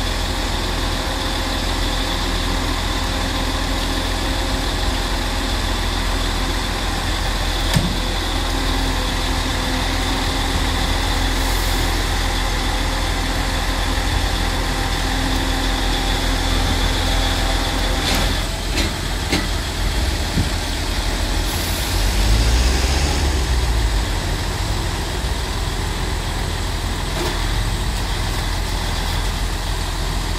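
Diesel engine of a DAF CF recovery truck idling steadily at close range, with a few sharp clicks and a short louder rumble about three-quarters of the way through.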